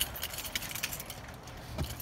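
Faint rustling and light clicks as a person climbs into a car's driver's seat, with a sharper click near the end.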